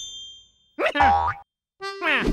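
Cartoon sound effects: a short high ringing tone that fades, then a springy boing about a second in.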